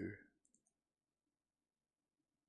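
Near silence, with two faint short clicks about half a second in, just after a spoken word trails off.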